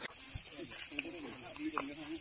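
Indistinct voices talking over a steady high hiss, with a couple of faint clicks.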